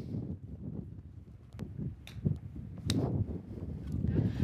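Wind rumbling on the microphone, with a few sharp clicks, the loudest about three seconds in, as a 60-degree wedge strikes a golf ball on a half swing.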